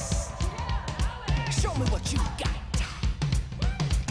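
A pop-rock song playing, with a drum kit keeping a steady beat and a male lead vocal singing over the band.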